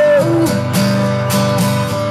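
Live song with a strummed acoustic guitar playing steady chords, and a held sung note that ends just after the start.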